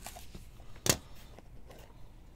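A small cardboard trading-card box being handled as its lid is opened: a faint tick at the start and one sharp click just under a second in, over faint rustling.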